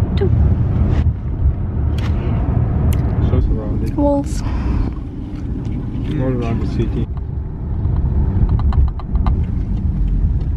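Cabin noise of a moving car: a steady low road rumble, with brief snatches of voices over it.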